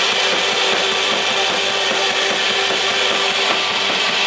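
Loud distorted electric guitar from a live rock band: a dense wall of noise with one held note and a fast even pulse underneath.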